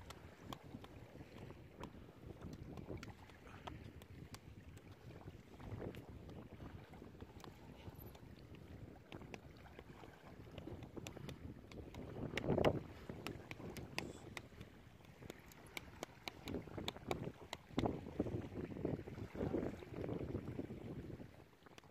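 Wind buffeting the microphone in uneven gusts, loudest about twelve seconds in and again near the end, with scattered sharp clicks.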